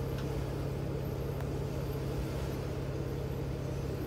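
Jeep Wrangler Unlimited's engine running steadily at low revs as it creeps down over rocks in low-speed crawling.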